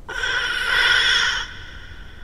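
A vacuum-cleaner nozzle sucking a piece off a toy hovercraft: a sudden, loud whining suck made of several steady tones. It lasts about a second and a half, then drops to a fainter whine that trails away.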